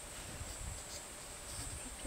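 Faint, steady, high-pitched insect buzz of cicadas or crickets, with a low rumble underneath.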